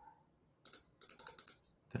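Faint, irregular clicks of computer keyboard keys being tapped, a quick run of several taps starting about half a second in.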